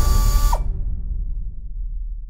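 Trailer sound effect: the loud music cuts off sharply with a short falling tone about half a second in, leaving a low mechanical rumble that fades away.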